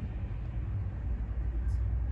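Steady low hum of background room noise, with no distinct sound over it.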